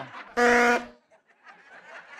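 Plastic vuvuzela blown in one short blast of about half a second, a single steady note.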